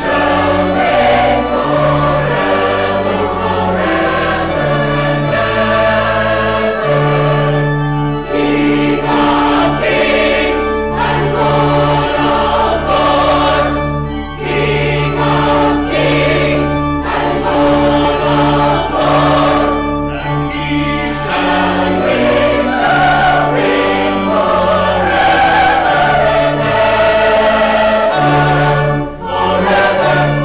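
Many voices singing a hymn together over steady accompaniment, with long held low notes changing every second or two.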